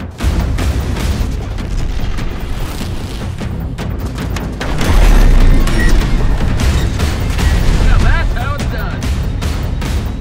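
Trailer soundtrack of music over battle sound effects, with booming explosions; it swells to its loudest about five seconds in.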